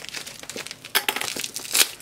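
Plastic packaging crinkling and rustling as it is handled and pulled off a parcel, with sharper crackles about one second in and again near the end.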